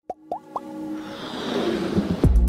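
Intro sound effects for an animated logo: three quick rising pops in the first half-second, then a whooshing riser that swells steadily louder.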